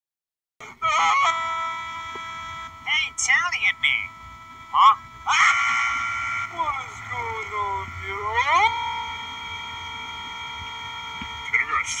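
A boy's voice screaming and wailing in a high pitch: long held cries broken by short yelps, with one slow swoop down and back up in pitch in the middle. It starts abruptly about half a second in.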